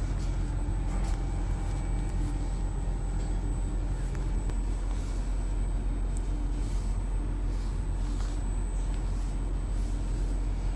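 Steady low hum and rumble of a stationary X60 electric commuter train's onboard equipment, heard from its open doorway, with a faint steady high tone above it.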